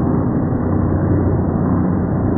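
A loud, steady, muffled rumble with no high end and no rhythm: a trailer sound-design drone.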